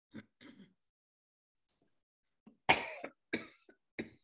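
A person coughing over a video-call microphone: two short coughs about half a second apart, roughly two-thirds of the way in, after a couple of faint short throat sounds near the start.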